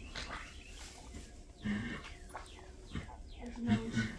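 A foaling mare gives two short low grunts while straining in labour, the second the louder, near the end.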